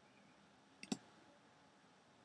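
A single click of a computer's pointer button, heard as a quick press and release about a second in, against near silence.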